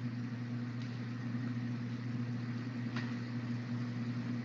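Steady low hum with a hiss over it: the background noise of an open microphone heard through an online voice chat, with a faint click about three seconds in.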